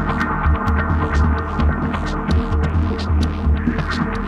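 Electronic music, ambient or dub techno in style: a steady droning hum under a throbbing low bass pulse, with scattered sharp ticks and clicks above.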